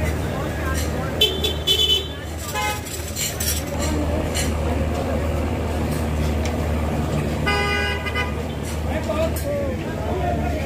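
Vehicle horns tooting on a crowded street: a few short toots in the first three seconds and a longer horn of about half a second around seven and a half seconds in, over crowd voices and a steady low engine hum.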